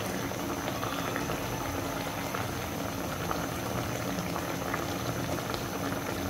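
Fish simmering in a vinegar broth (paksiw na galunggong) in a pan, bubbling steadily with many small pops.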